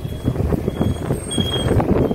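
Steady low rumble of a car's engine and tyres, heard from inside the car as it moves slowly through traffic, with a few faint, thin, high beeps, the clearest about three-quarters of the way through.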